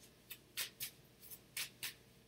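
Tarot cards being handled in the hands: about six short, faint card clicks and rustles.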